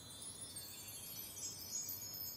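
Faint, high-pitched chimes ringing in many overlapping tones, a shimmering soundtrack effect that builds slightly.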